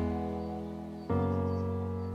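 Instrumental background music of slow, sustained chords, with a new chord coming in about a second in.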